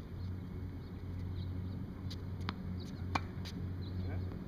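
Tennis balls being struck: a few sharp knocks in the second half, the loudest, a ringing pop about three seconds in, as a backhand strikes the ball off the racquet strings.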